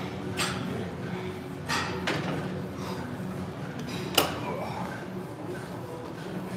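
Gym weight machine clanking: a few sharp metal knocks from the weight stack and handles being let go, the loudest about four seconds in, over a steady low hum.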